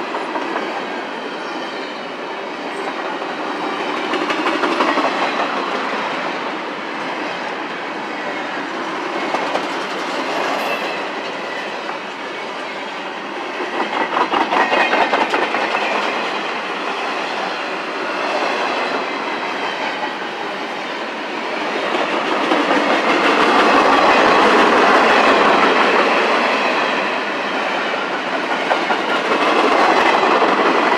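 Freight train cars rolling past at speed: steel wheels rumbling and clacking over the rail joints. The sound swells and eases as the cars go by, with a run of rapid clacks about halfway through and the loudest stretch a little before the end.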